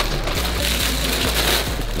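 Plastic bags rustling and crinkling steadily as a sneaker is pulled out of its plastic wrapping.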